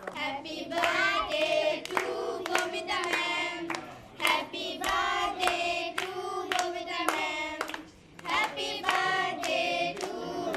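A group of adults and children singing a birthday song together, with hand clapping in time through the singing.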